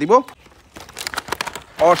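A cardboard toy box with a clear plastic window and tray being opened by hand, giving a short run of crinkling and crackling.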